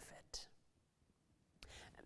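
Near silence: room tone, with a faint breath about a third of a second in and a soft intake of breath near the end.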